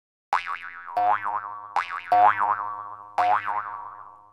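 A series of cartoon boing sound effects, about five in a row, each a springy twang whose pitch wobbles quickly before it rings out and fades, as for bouncing balls.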